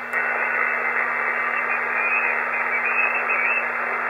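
Shortwave receiver's speaker giving a steady hiss of band noise through its narrow SSB filter on the 20-metre amateur band, with no station transmitting. The hiss steps up in level just at the start, with a faint click, as the receiver's preamp is switched on.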